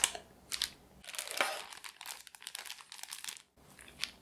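Plastic piping bag crinkling and rustling as it is handled and filled with batter from a silicone spatula. Two short rustles come first, then a longer, denser crackling stretch that cuts off suddenly near the end.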